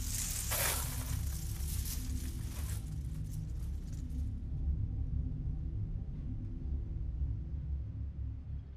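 A hanging bead or string curtain rattling and rustling as it is pushed through: a hissing clatter that starts suddenly, is strongest for about three seconds and dies away about four seconds in. Under it runs a low, steady drone.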